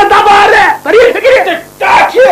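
A person wailing in loud, high-pitched, drawn-out cries, two long ones in a row, with a theatrical, lamenting sound.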